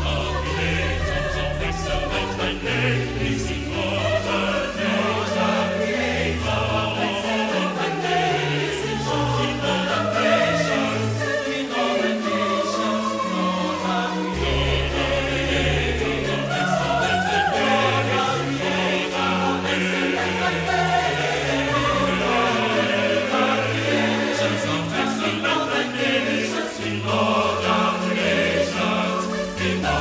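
Mixed choir of men and women singing in harmony, a continuous run of sustained chords with a low bass line beneath.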